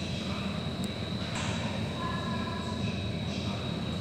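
Steady indoor background hum with an even hiss and a constant thin high-pitched whine, with faint distant voices.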